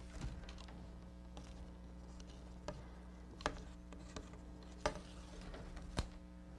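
Flat reed being woven through oak basket hoops: faint rustles and a few scattered clicks as the strip is pulled through and pushed tight, over a steady low hum.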